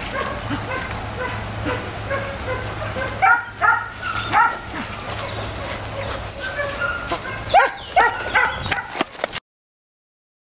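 Boar-hunting dogs barking and yelping in short, repeated calls, with two louder clusters, one about a third of the way in and one near the end. The sound cuts off abruptly just before the end.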